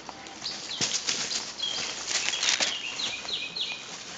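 A songbird giving a quick run of short down-slurred whistled notes in the second half, over irregular rustling and crackling.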